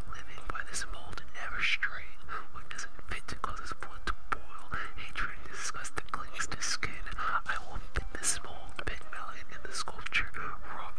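A person whispering continuously, the words unclear, with frequent small clicks throughout.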